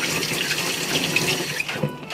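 Kitchen tap running steadily into a sink, water splashing as hands are rinsed under it.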